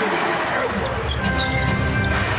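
Live basketball game sound in an arena: the ball dribbling and crowd noise, with a few steady high tones held through the second half.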